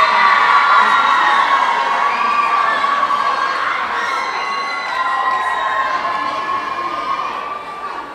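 A large crowd of students cheering and screaming for a dance team that has just been announced. The cheer is loudest at first and slowly dies down.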